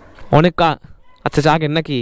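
A man speaking: two short, loud phrases of speech.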